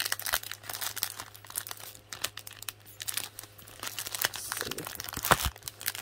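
Clear plastic sticker bag crinkling and crackling as fingers pull at its tightly glued seal, with a sharper crackle about five seconds in.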